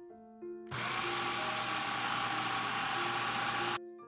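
Food processor running steadily for about three seconds as it purees avocados with cilantro, garlic and chilies, starting suddenly just under a second in and cutting off suddenly near the end. Soft piano music plays before it and faintly beneath it.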